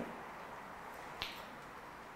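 Quiet room tone with a single short, sharp click a little over a second in.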